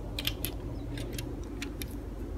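Small plastic clicks of Lego pieces being handled and fitted onto a Lego car, about eight light clicks at uneven intervals.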